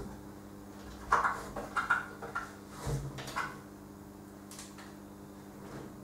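A cat pawing at a metal window latch and stay, which rattle and knock in a cluster of short clatters lasting about two and a half seconds, with one dull thump in the middle. A steady low hum runs underneath.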